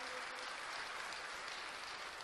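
Steady, even background hiss in a pause of a lecture recording, with no voice and no distinct events.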